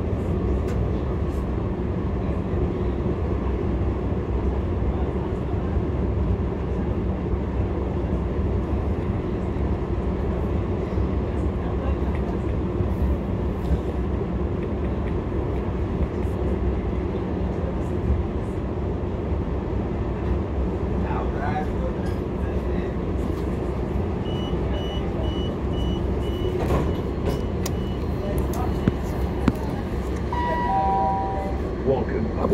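Passenger train running through a station, heard from inside the carriage as a steady low rumble. Near the end, a rapid series of short high-pitched beeps sounds over it.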